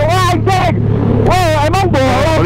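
Honda Vario scooter engine running with a steady low drone at speed, under a voice crying out twice in long, wavering calls that rise and fall in pitch.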